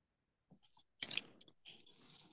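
Faint mouth clicks and lip smacks, then a short, louder intake of breath about a second in, from a man about to start speaking.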